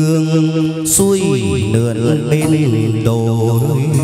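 Hát văn (chầu văn) ritual singing with instrumental accompaniment: the singer holds long, wavering notes, sliding down about a second in.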